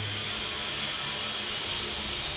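Steady, even whirring background noise with no distinct events.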